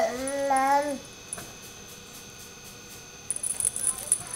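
A drawn-out, wavering vocal sound lasting about a second, which then stops. Near the end there is faint high ticking.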